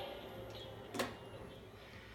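A quiet room with a faint low hum and a single sharp click about halfway through.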